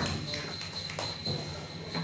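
Quiet pause on a small live-band stage: a steady low hum from the guitar amplifiers, with a few scattered light taps.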